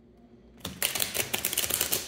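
A deck of tarot cards being shuffled by hand: a rapid run of crisp card-edge clicks that starts about half a second in.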